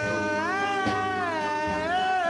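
Doo-wop ballad recording: a high voice holds one long note, slowly bending it up and down over a soft band backing.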